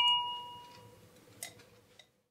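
A small hard object, most likely the paintbrush, clinks against the rinse cup, leaving a clear ring that fades within about a second while the brush is washed. A faint tick follows about a second and a half in.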